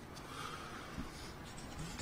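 Faint rustling from a cloth face mask being adjusted and a sheet of paper being handled close to podium microphones, with a small click about a second in.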